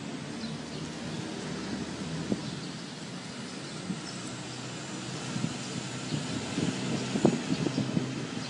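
A motor vehicle engine running steadily, a low even hum, with a quick run of light clicks and taps near the end.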